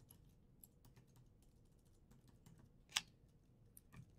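Faint typing on a computer keyboard: a scatter of soft, irregular keystrokes, with one louder keystroke about three seconds in.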